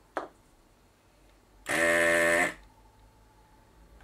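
SC7000 desoldering gun's vacuum pump buzzing in one burst of just under a second, switching on and off sharply as it sucks molten solder from a joint. A short faint tick comes just before it.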